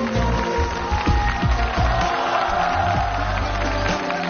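Instrumental music from a Chinese traditional-instrument ensemble, with held melody notes over a steady beat of low drum strikes.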